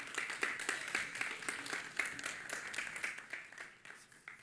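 Audience applauding, the clapping thinning out and fading near the end.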